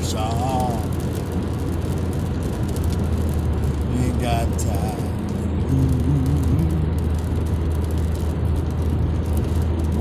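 Steady road and engine noise inside a car's cabin at highway speed. A sung note trails off at the start, and a few soft, low hummed notes come around the middle.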